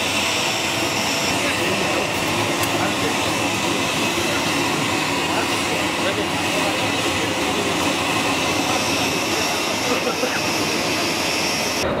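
Steady airport jet-engine noise: a constant high whine over a loud, even rush, with indistinct voices mixed in.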